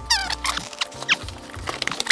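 Styrofoam packing blocks and a cardboard shipping box squeaking and rubbing against each other as the box is lifted off a PC case: a burst of high, wavering squeaks at the start, then scattered short scrapes and taps of cardboard.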